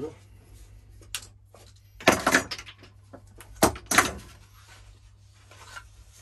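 Cut wooden crib end panels handled and knocked together: a light click, a short scrape about two seconds in, then two sharp wooden knocks close together.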